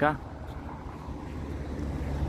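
Low, steady rumble of street traffic, growing slightly louder toward the end.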